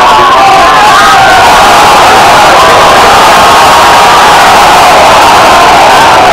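Loud crowd of spectators shouting and cheering without a break, many voices overlapping.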